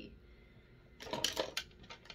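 Small hard makeup items, brushes and plastic cases, clinking and clattering together as they are handled. A quick run of clicks comes about a second in, with one more at the very end.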